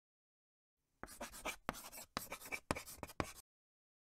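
Chalk writing on a chalkboard: a run of about a dozen short strokes, starting about a second in and stopping shortly before the end.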